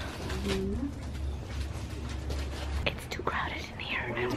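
Soft, low voices murmuring, with short quiet vocal sounds about half a second in and again near the end, over a steady low room hum.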